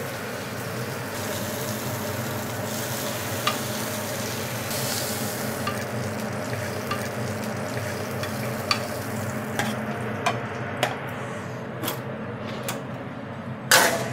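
Pork belly sizzling in a hot frying pan, a steady hiss with scattered sharp pops, over a low steady hum. The hiss thins about ten seconds in, leaving occasional ticks, and a loud sharp knock comes near the end.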